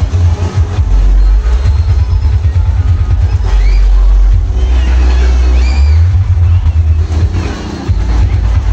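Loud music with a heavy, booming bass line, played over a fairground sound system. A few high gliding sounds come over it around the middle.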